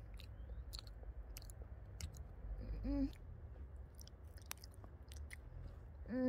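Scattered small wet smacking and slurping mouth noises that imitate horses drinking, with a short hummed vocal sound about three seconds in, over a steady low rumble.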